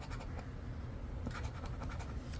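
Edge of a poker chip scraping the coating off a paper scratch-off lottery ticket, in short strokes.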